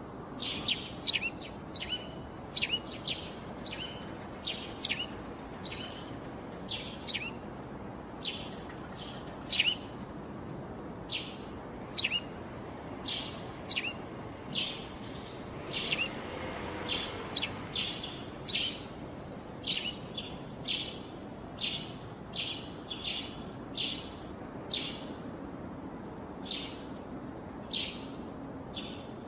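Small birds chirping: short, sharp, high chirps, about one or two a second at an uneven pace, over a steady low background noise.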